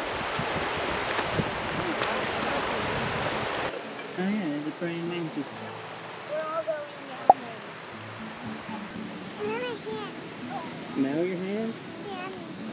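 Steady rush of a rocky creek's rapids for the first few seconds, cutting off abruptly, followed by children's voices chattering and calling, with one sharp click.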